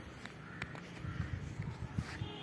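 Birds giving a few faint caw-like calls over a steady low outdoor rumble.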